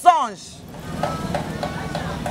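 A woman's voice finishing a phrase right at the start, then a steady low rumble of outdoor background noise with faint scattered sounds over it.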